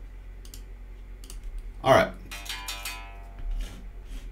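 A few soft computer mouse clicks. About halfway there is a sharp strike, then a short electric guitar chord rings and fades.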